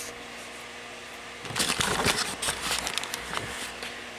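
Steady low room hum, then, from about a second and a half in, two seconds of irregular clicks and rustling, like objects being handled on a workbench.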